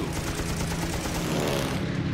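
Propeller-driven piston-engine warplanes running, a steady engine drone with a rising whine in the second half as one picks up speed or passes.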